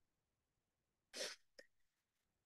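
Near silence, broken a little past a second in by one short, quiet breath sound from a person close to the microphone, followed by a faint click.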